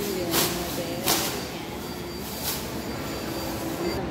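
Food court background: a steady low hum with a general murmur, and a few short sharp clicks.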